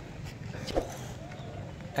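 Steady low background rumble, with faint voices in the distance and no close sound.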